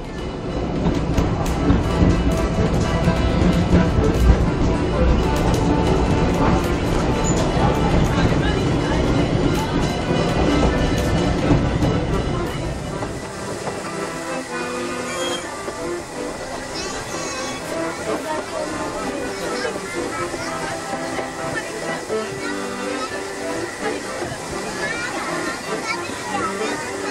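Running noise of a narrow-gauge passenger train heard from aboard, a loud steady rumble for about the first half that drops away about halfway through. Music plays over it, plainest in the quieter second half.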